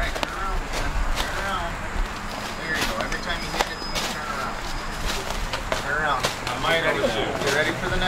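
Indistinct voices of a group of people talking outdoors, with a few sharp clicks and some low rumble in the first couple of seconds.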